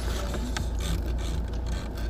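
Steady low rumble of a car cabin, with faint light clicks and rustles over it.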